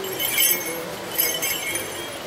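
Light clinking jingle, heard twice: a bright burst about half a second in and another just past one second, with a short ring after each.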